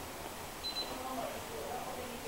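Faint voice sounds, well below the level of the surrounding talk, starting about half a second in, with a brief high-pitched tone just after.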